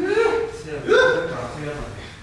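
A man's voice giving two short wordless exclamations. The first rises in pitch at the start and the second comes about a second in.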